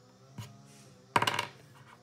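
A single light click, then about a second in a small die thrown onto a hard tabletop, clattering briefly in a quick run of rattles as it tumbles to rest.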